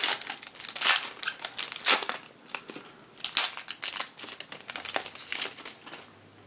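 Silver foil trading-card pack wrappers being torn and crumpled by hand: an irregular run of sharp crinkles, loudest about one and two seconds in, thinning out towards the end.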